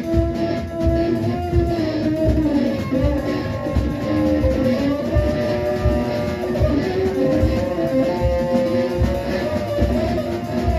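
A live experimental noise-metal band playing electric guitar and drum kit: a steady kick-drum pulse under long held, slightly wavering pitched tones.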